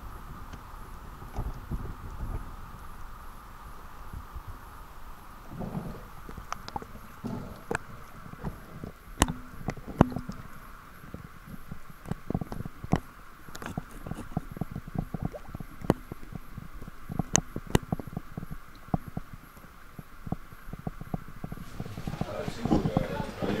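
Water sounds from a camera half under the sea surface as fish are handled and cleaned in the water: irregular clicks and knocks over a steady muffled hum.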